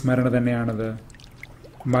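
A man speaking in Malayalam, pausing for nearly a second midway before going on.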